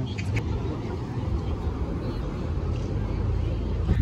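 Wind rumbling on the phone's microphone at the beach, a steady, low, uneven rumble.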